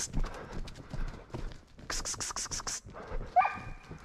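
Footsteps crunching on a gravel road, coming in quick runs of strides, with a brief rising whine about three seconds in.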